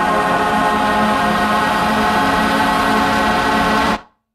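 A man's voice holding one long, steady 'aaah' on a single low pitch, sung right into a close microphone, cut off just before the end.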